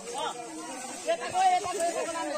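Speech: people talking.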